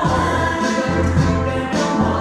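A Thai pop song playing, with sung vocals over a bass line.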